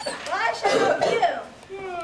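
Indistinct talking from several voices, loudest in the first half.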